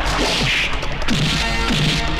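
Film fight sound effects: sharp swishes and whacks of punches, about two in quick succession, over a loud background score.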